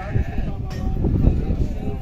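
Sheep or goats bleating, heard faintly over a heavy low rumble on the microphone.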